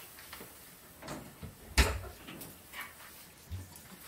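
A room door being handled and opened: a few light knocks and clicks, with one sharp thump about two seconds in.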